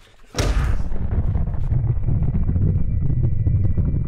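A sudden loud boom about half a second in, followed by a heavy low rumble that holds steady to the end: a cinematic sound-design impact hit with its sustained bass tail.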